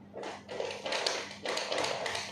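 Plastic cat-food bag crinkling and scratching in quick repeated strokes, about three or four a second, as a hungry cat works at it to get at the food.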